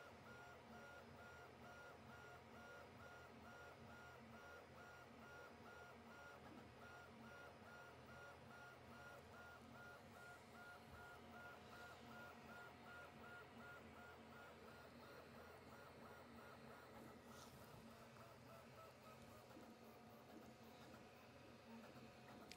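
QIDI Q1 Pro 3D printer printing, heard faintly: its stepper motors give off high tones in short repeated pulses, about three a second.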